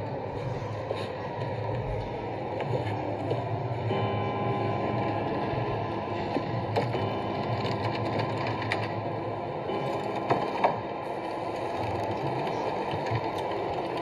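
Horror film soundtrack heard through a tablet's speaker: a steady low drone, joined about four seconds in by held tones, with scattered mechanical clicks and rattles as door latches are worked.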